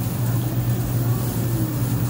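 Outdoor air-conditioning condenser unit running with a steady low hum.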